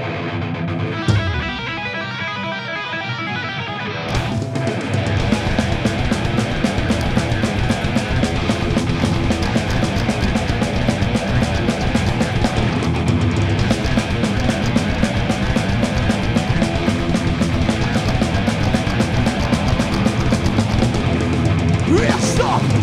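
Heavy metal band playing live with distorted electric guitars, bass and drums. For the first four seconds the guitars play alone without drums. Then the drums and full band come in and play on to the end.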